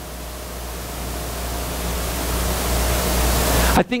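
Steady hiss with a low hum underneath, the recording's own noise during a pause in speech, swelling gradually louder and then cutting off abruptly as the voice comes back near the end, as a recorder's automatic gain turns up the silence and drops back for speech.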